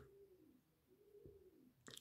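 Near silence with a bird faintly cooing in low, slow calls that rise and fall.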